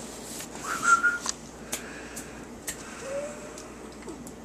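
A person's short, steady whistle about a second in, a call to the dog to come. A few light clicks and a faint, short, lower tone follow near the end.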